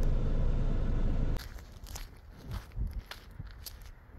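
Low rumble of a car heard from inside the cabin, cutting off abruptly about a second and a half in. Scattered footsteps and scuffs on pavement follow.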